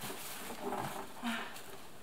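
Quiet handling sounds of a new deep fryer being moved and turned in the hands: a couple of soft, brief rustles from its plastic film and body.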